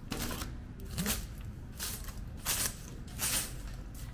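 A broom sweeping steps: about six short, scratchy swishes, a little more than one a second.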